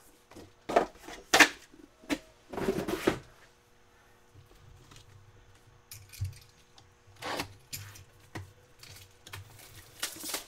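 Cardboard trading-card boxes being handled and set down on a tabletop: several short knocks and clicks with a brief rustling scrape, busiest in the first three seconds, then a few quieter knocks later.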